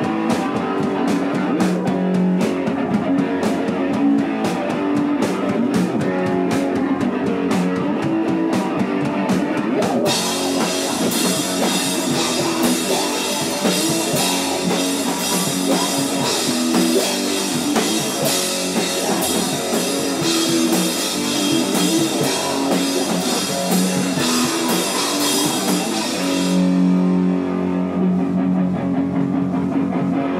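Hardcore punk band playing live: distorted electric guitar over a drum kit beating steadily. About ten seconds in, the cymbals start crashing continuously. They drop out a few seconds before the end, leaving the guitar on its own.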